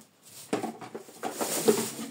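Handling noise: rustling and light knocks as household product bottles and packaging are rummaged through and one is picked up. Loudest shortly before the end.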